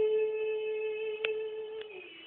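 Female vocalists holding one long, steady sung note that tapers off near the end: the final held note of the song. Two short clicks sound in the second half.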